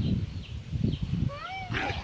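Small white fluffy dog making short low growling grumbles while held and wrestled in play. About a second and a half in, it gives a brief high whine that rises and falls.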